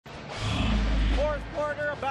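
Broadcast transition sound effect: a low rumbling whoosh lasting about a second, followed by a voice near the end.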